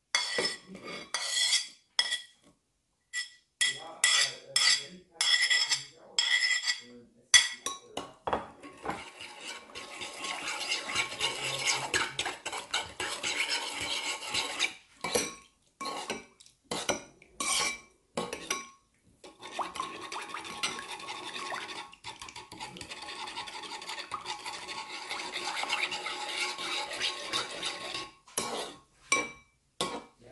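A metal spoon clinks against ceramic dishes in sharp, ringing taps for the first several seconds. Then comes stirring in a ceramic bowl of vinegar dipping sauce, the spoon scraping and clinking against the bowl in two long stretches with a few separate clinks between them.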